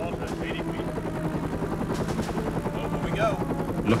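Helicopter rotor and engine noise heard from inside the cabin: a steady, unbroken drone with faint voices under it.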